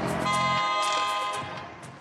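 A vehicle horn sounding one long, steady blast of about a second and a half, fading at the end, over low traffic rumble.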